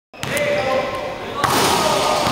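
Basketball dunk in a gym: a ball bounce near the start, then a sharp bang as the ball is slammed through the rim about one and a half seconds in, with voices around it.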